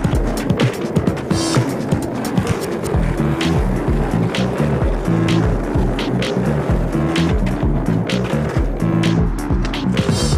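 Skateboard wheels rolling with clacks and knocks of the board, mixed under background music with a steady, repeating bass line.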